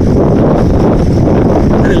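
Wind buffeting the microphone of a camera moving fast on a bicycle: a loud, steady low rumble. A voice starts just at the end.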